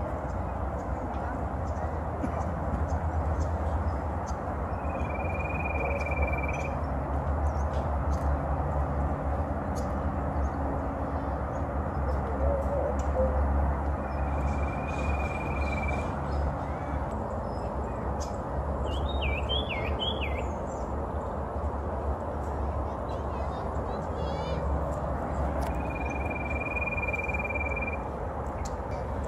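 Common iora singing: a long, level whistle held for a second or more, heard three times about ten seconds apart, with a short, quick warbled phrase between the second and third. A steady low background rumble runs underneath.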